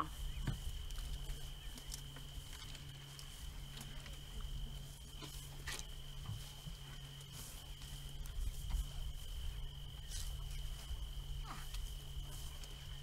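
African elephants feeding in the dark: scattered snaps and rustles of branches and leaves, heard over a steady high-pitched drone and a low steady hum.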